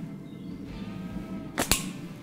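A catapult shot: a sharp snap as the rubber bands release about a second and a half in, then a second crack a split second later as the shot strikes the rat target.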